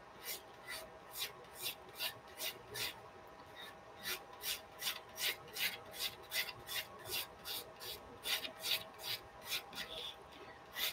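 Graphite pencil sketching on drawing paper: a run of short, quick strokes, faint at first and from about four seconds in coming about three a second.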